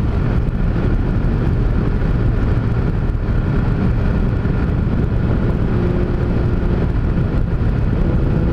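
Honda CG single-cylinder motorcycle engine running at a steady cruising speed, heard under wind rushing past a helmet-mounted camera.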